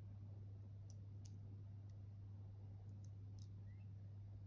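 A few faint, scattered clicks of small plastic toy pieces being handled and fitted together by hand, over a steady low hum.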